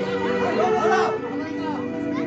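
Several people chattering and calling out at once, voices overlapping.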